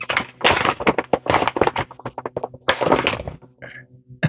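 Shiny plastic gift bag crinkling and rustling in a rapid run of sharp crackles as it is pulled open by hand, dying down near the end.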